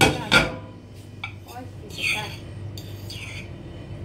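Metal cutlery clinking against a glass baking dish and a ceramic plate as a roasted pepper is lifted across. Two sharp clinks come right at the start, followed by fainter scrapes and clinks.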